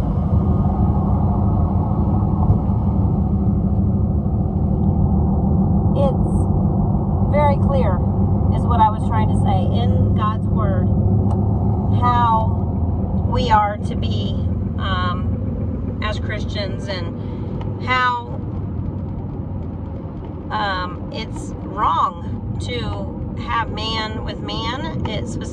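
Steady road and engine rumble inside a moving car with a window down. A woman's voice talks over it on and off from about six seconds in.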